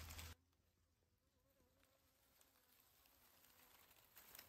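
Near silence after the background noise cuts off suddenly just after the start, with the faint, slightly wavering buzz of a honeybee flying near its ground nest.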